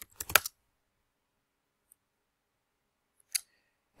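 Computer keyboard keystrokes: a quick few in a row right at the start, then quiet, with one more click about three and a half seconds in.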